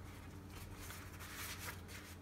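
Faint rustling of thin filo pastry sheets and baking paper being pressed and smoothed into a baking dish by hand, over a low steady hum.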